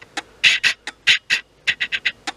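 A stack of trading cards handled in the fingers: an irregular run of about ten short, sharp scuffs and clicks of card stock.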